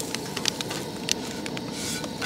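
Propane camp-stove burner hissing steadily under a frying pan where a corn tortilla is heating, with scattered light ticks and crackles.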